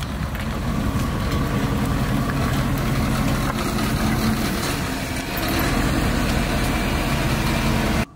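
Ice cream van's engine running steadily, a loud, dense rumble that stops suddenly at the end.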